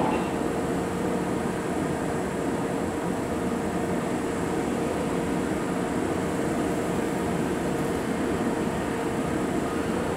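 Kintetsu 2430-series and 2610-series electric train standing at the platform, its onboard equipment giving a steady hum with one even mid-pitched tone.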